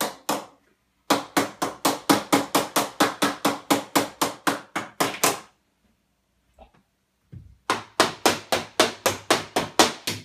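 A child's toy hammer banging in fast runs of blows, about five a second, stopping for about two seconds midway and then starting again.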